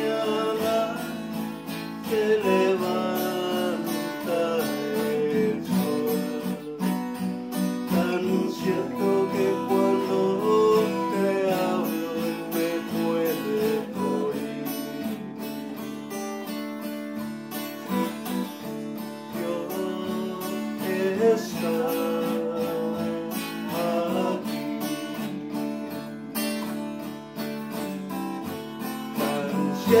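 Acoustic guitar strummed in chords, an instrumental passage between sung lines.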